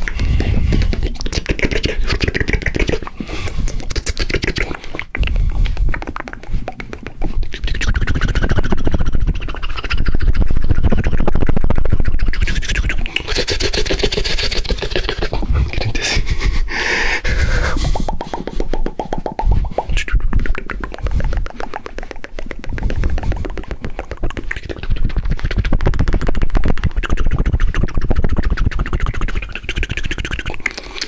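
Fast, aggressive ASMR mouth sounds made right up against a binaural microphone: a dense, continuous stream of rapid clicks, pops and smacks with a deep low rumble underneath.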